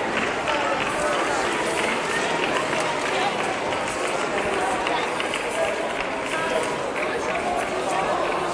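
Steady hubbub of many spectators' voices talking over one another at an outdoor athletics track, with no single voice standing out.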